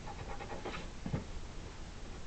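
Red felt-tip pen writing on paper, a few short strokes over a low room hum.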